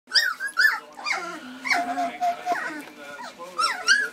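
A litter of three-week-old standard poodle puppies whining and squeaking, repeated short high-pitched cries overlapping one another, one held a little longer about two seconds in. The owner takes them for hungry.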